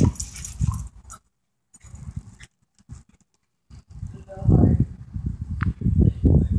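A small dog's vocal noises during fetch, low and rumbly, loudest about four and a half seconds in. The sound cuts out to total silence twice in the middle.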